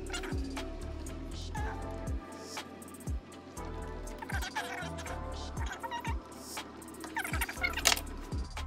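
Background music with a steady beat: low kick-drum strokes under held notes and a few gliding higher tones.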